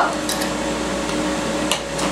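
A utensil quietly scraping out a metal mixing bowl as a sauce is poured onto a meatloaf, with one light knock near the end, over a steady low hum.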